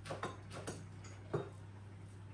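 Kitchen knife cutting fresh sage leaves on a wooden cutting board: a few irregular knocks of the blade on the board, the loudest about a second and a half in.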